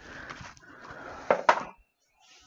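A rolled play mat slides out of its cardboard box with a long rustling scrape. Two sharp knocks follow close together near the end, as the roll is handled and set down on a table.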